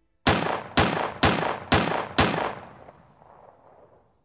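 Five gunshots, a sound effect closing the track, about half a second apart, each with a ringing tail; the echo fades out after the last shot.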